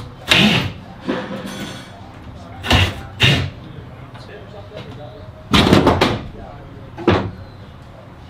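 A run of sharp knocks and bangs against the bare sheet-metal wall of a van being converted, about six in all, with a longer rattling cluster about two-thirds of the way through, as a wooden wall board is worked on and taken down.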